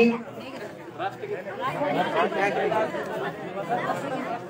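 Several people chattering at once.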